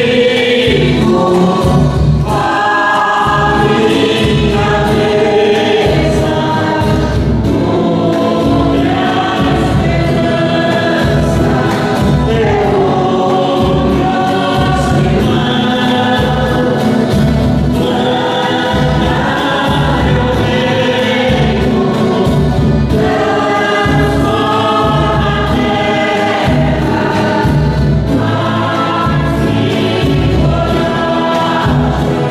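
Church choir singing a hymn with instrumental accompaniment, over a steady low beat.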